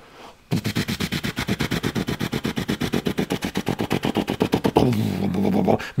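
A man imitating a helicopter's rotor with his mouth: a rapid, even chopping of about ten beats a second for some four seconds, ending in a drawn-out voiced note.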